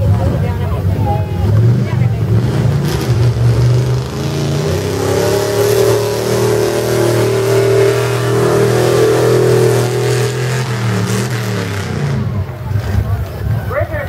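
Pickup truck engine revving hard as the truck drives through a mud bog pit: the engine note climbs over the first few seconds, holds at high revs, then drops off near the end.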